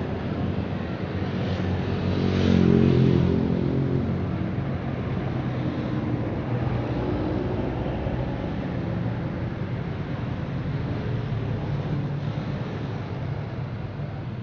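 Road traffic passing: engine and tyre noise from cars going by. One vehicle passes close about two to three seconds in and is the loudest moment. After that the traffic runs on as a steady hum.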